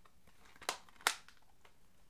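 Plastic Blu-ray cases being handled: two sharp clicks about a third of a second apart in the middle, with a few faint ticks around them.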